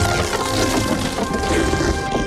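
Film soundtrack of a stone temple collapsing: a dense rush of crumbling rock and falling debris under held notes of the film's score.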